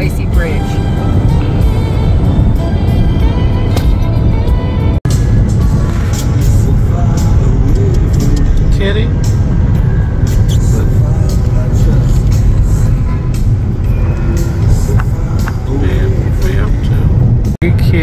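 Steady low road rumble inside a moving car, with music and voices playing over it. The sound breaks off for an instant twice, about five seconds in and near the end.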